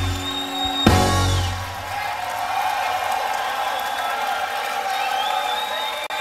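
A rock band's closing chord with a final drum hit about a second in, ringing out briefly, then a crowd cheering with high whistles.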